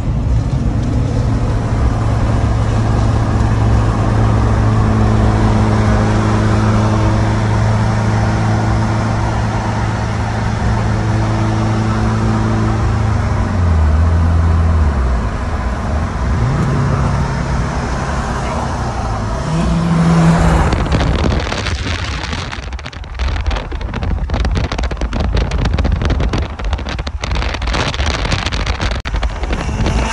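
Inside the cab of a Duramax diesel pickup cruising on the freeway: a steady engine and road drone whose pitch drops and then climbs again about halfway through. From about two-thirds of the way in, wind buffets the microphone through an open window.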